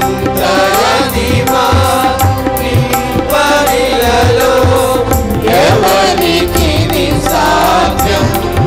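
A mixed choir of men and women singing a worship song together through microphones and a PA, accompanied by a keyboard and a steady low drum beat about twice a second.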